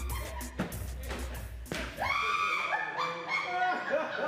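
Bass-heavy dance music with a steady beat from a faulty radio that switches itself on and off; it cuts off suddenly about two seconds in. After the cut-off comes a high, wavering, voice-like sound.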